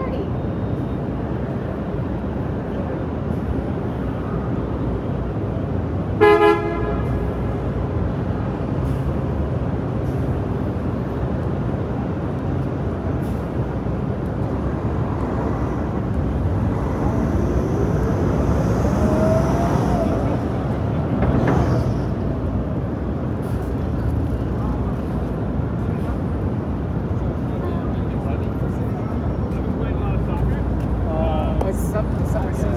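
Busy city street: steady traffic and passersby throughout, with one short car horn honk about six seconds in, the loudest sound. A rising tone from a passing vehicle follows around the middle.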